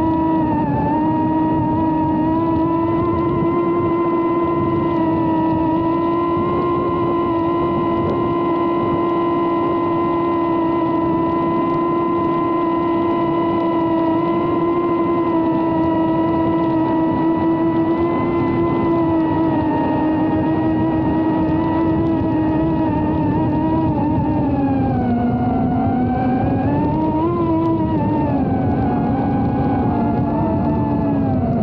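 Tinyhawk II Freestyle micro FPV quadcopter's brushless motors and propellers whining steadily in flight, heard close up from the camera mounted on the drone. Near the end the pitch drops, then climbs back up as the motors slow and speed up again.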